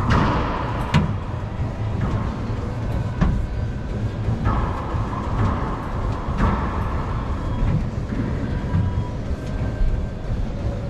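Racquetball rally in an enclosed court: sharp cracks of the ball off racquets and walls, each with a ringing echo. The loudest come at the very start and about a second in, with more at roughly three, four and a half and six and a half seconds, over a steady low rumble.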